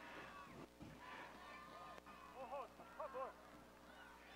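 Very faint, distant voices of a celebrating football crowd, with a few short calls or shouts about two and a half to three seconds in, over a low hiss.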